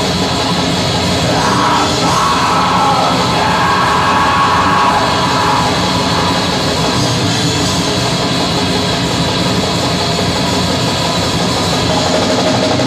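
Black metal band playing live: distorted electric guitars and drums at a loud, steady level, with screamed vocals.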